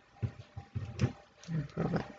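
Irregular low knocks and rubbing, with a couple of sharp clicks, from hands working a metal loom hook over the plastic pegs of a wooden knitting loom.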